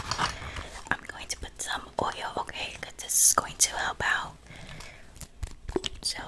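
A woman whispering softly close to the microphone, with hissing sibilants and a few small clicks scattered through; it fades toward the end.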